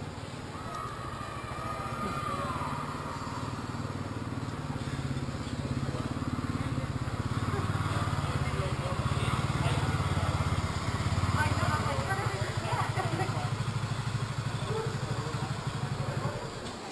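Small engine of a side-by-side utility vehicle running as it drives through a concrete tunnel, growing louder over the first ten seconds, with people talking.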